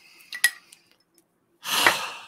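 A few light clinks of a glass perfume bottle and its cap about half a second in, then near the end a loud, short breath of someone smelling the fragrance.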